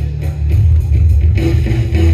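Loud rock music with guitar.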